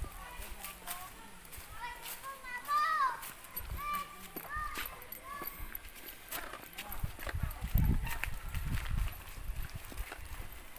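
Voices of a group calling out and chatting while walking, with low thumps near the end.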